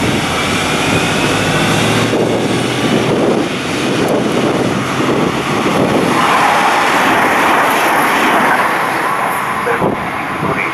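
Diesel Minuetto multiple unit pulling away under power, its engines running loud and steady, with a whine rising in pitch over the first two seconds. An electric Minuetto passes on the next track, and the wheel and running noise swells from about six seconds in.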